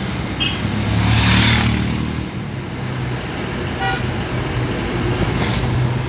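Engine hum and road noise inside a moving vehicle's cabin, with brief horn toots just after the start and about four seconds in, and a louder rush that swells and fades between one and two seconds in.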